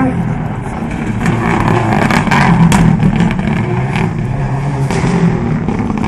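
Subaru Impreza Group N rally car's turbocharged flat-four engine running hard as the car drives the stage, loudest a couple of seconds in, with a few sharp cracks.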